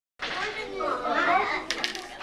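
Young children talking, with a few quick clicks near the end.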